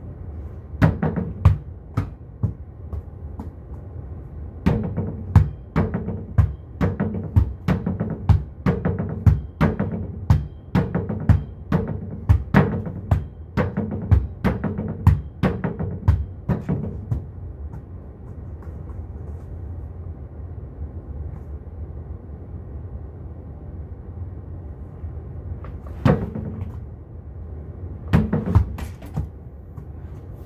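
Volleyball struck repeatedly against a plywood wall board, about two sharp hits a second in a long run, with a few scattered hits before and after. A steady low hum sits underneath.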